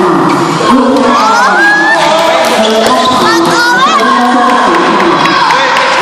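Many children's voices shouting and chattering at once, mixed with the sharp clicks of table tennis balls striking paddles and tables.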